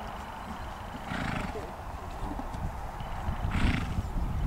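Ridden pony moving across the arena surface, blowing out twice in short breathy snorts, about a second in and near the end, over a low rumble.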